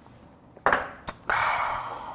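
Small soju shot glass set down on a wooden table: a thud, then a sharp glassy click about a second in, followed by a breathy exhale after the shot that fades out.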